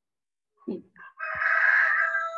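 A rooster crowing: one long crow starting just over a second in, heard over a video call through a participant's microphone.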